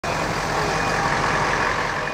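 Steady engine noise of a busy ferry quay, a dense mechanical rumble with a faint low hum running under it.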